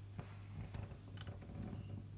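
A few faint small clicks from the exposed needle mechanism of a Singer sewing machine as it is moved by hand, over a low steady hum.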